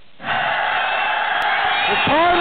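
A large crowd cheering and shouting, starting suddenly about a quarter second in.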